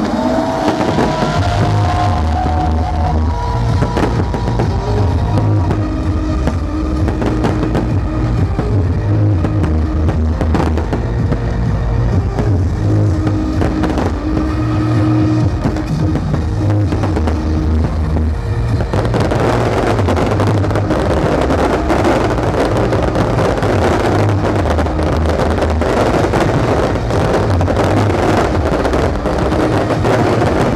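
Electronic dance music over a large PA with a heavy, pulsing bass, and fireworks banging over it. About two-thirds of the way in, a dense crackling of fireworks swells up and stays to the end.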